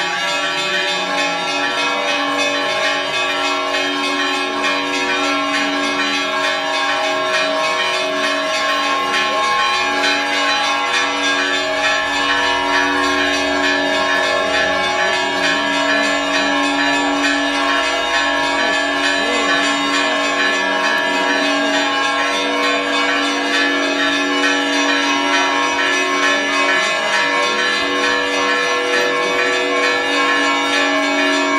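Church bells ringing steadily, their many tones overlapping without a break.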